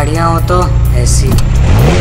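A car engine running with a low steady hum, then revving up with a rising pitch near the end, mixed with music and a short voice at the start.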